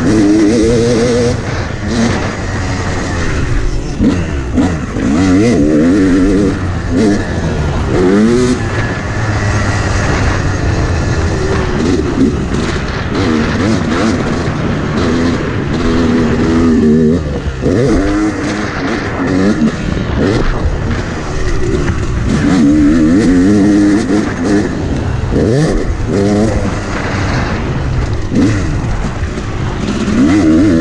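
Yamaha YZ250X two-stroke dirt bike engine, revved hard and backed off over and over, its pitch climbing and dropping every second or two through the gears, with wind rushing over the microphone.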